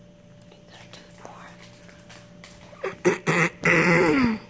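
A few short, loud vocal sounds near the end, the last and longest one sliding down in pitch.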